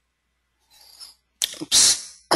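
A person sneezing: a faint intake of breath, then one loud sneeze about one and a half seconds in.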